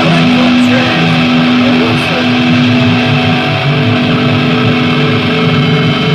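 Screamo/grind band's recording: distorted electric guitars holding loud, sustained droning notes that ring on steadily.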